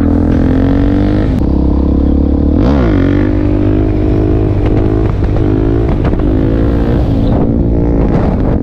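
Suzuki DR-Z400 supermoto's single-cylinder four-stroke engine under way on the road. The revs climb, drop sharply at a gear change about a second and a half in, dip and pick up again briefly near three seconds in, then hold fairly steady with small rises and falls.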